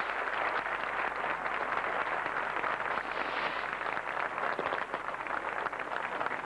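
Stadium crowd applauding, a steady dense din of clapping.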